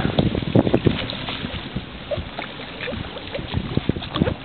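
Wind buffeting the microphone over water noise on a small fishing boat, with irregular knocks and bumps.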